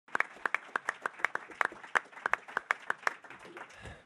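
Scattered applause from a seated audience, the separate claps distinct, dying away near the end.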